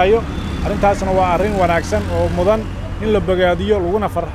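A man talking over a low, steady rumble of road traffic that grows louder around the middle.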